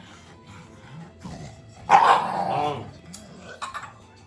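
A dog barking once, a loud drawn-out bark about two seconds in, with fainter vocal sounds before and after it.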